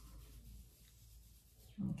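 Faint rustling of fingers rubbing through damp hair and over the scalp. A woman's voice starts near the end.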